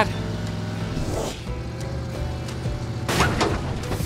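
Cartoon background music over a steady low hum. About three seconds in comes a short loud burst: a cartoon sound effect of a tyre bursting.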